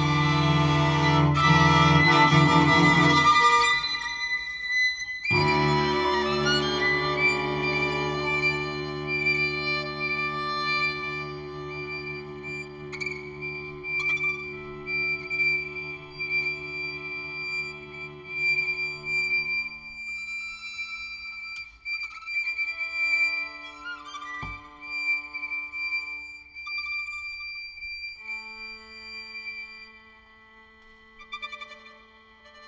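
String quartet of two violins, viola and cello playing a contemporary piece: a loud, low held chord for the first few seconds, then a sharp attack about five seconds in. After that come held notes beneath a long, high sustained note, thinning out and getting quieter, with one sharp stroke near the end.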